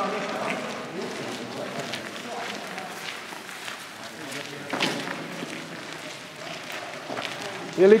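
Footsteps of a group of people walking, with indistinct chatter from several voices and one louder knock about five seconds in.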